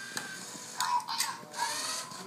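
Lego Mindstorms NXT safe responding to a correct color keycard: a short electronic beep, then a brief recorded voice response from the NXT brick's small speaker. Meanwhile an NXT servo motor whirs through plastic gears as it drives the drawer open.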